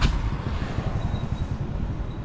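A small motor scooter passing close by, its engine running, over steady street rumble.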